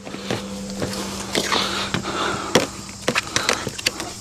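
Plastic stretch-wrap film on a firewood bundle being handled: crinkling and rustling with scattered light clicks and taps, over a faint steady hum.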